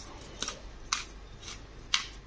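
Hand-twisted pepper mill grinding whole black peppercorns: a short, crunching rasp about twice a second, one for each twist.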